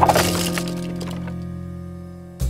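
A cartoon crash sound effect of something cracking and breaking, loudest at the very start and dying away, over background music holding a low chord that slowly fades.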